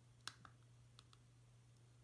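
Near silence with a low steady hum, broken by a few faint computer-mouse clicks: one a quarter of a second in, then two close together about a second in.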